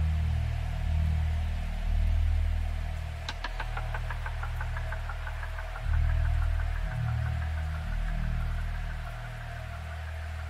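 Electronic DJ music: a deep bassline that shifts every second or so under a steady held tone. About three seconds in, a quick run of clicks trails off into a wavering higher line.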